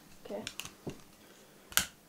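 A spoken "okay" followed by a faint click and then, near the end, one sharp, louder click: handling noise on a handheld vocal microphone.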